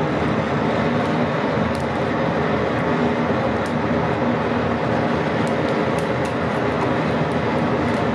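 A forge fire running at full blast: a loud, steady rushing noise with a low hum under it, and faint scattered ticks above.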